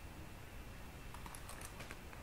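Faint light clicks from handling a small leather card holder with a metal zipper, with a few soft ticks in the second half.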